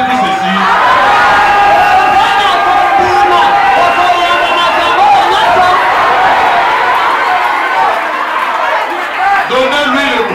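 Many voices calling out at once in a large hall, loud and overlapping with no pauses, as a congregation prays aloud together, with a man's voice carried through a microphone and loudspeakers.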